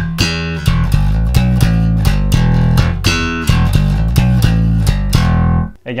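Electric jazz bass played slap style: thumb-slapped open E and octave notes with popped strings, in a swung funk rhythm of quick sharp attacks. The line stops suddenly near the end.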